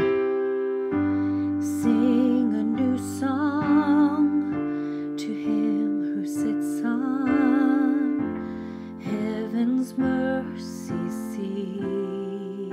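Piano chords held and changed every few seconds, moving through G major and F major, with a woman's voice singing the melody along with them in a wavering vibrato.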